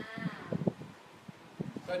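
A person's voice: a short, high, wavering vocal sound at the start, then a few low knocks and quieter murmur until speech begins near the end.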